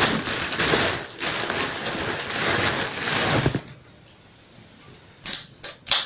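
Thin plastic carrier bag rustling and crinkling as a hand rummages in it, for about three and a half seconds. Near the end come a few sharp clicks as a drinks can's ring-pull is worked.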